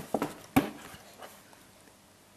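A baby's short mouth sounds as he takes puréed food off a spoon: a few quick ones at the start, the loudest about half a second in.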